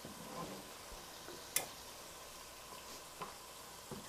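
Chopped onion and tomato frying in olive oil in a pot, a faint steady sizzle, with one sharp click about one and a half seconds in.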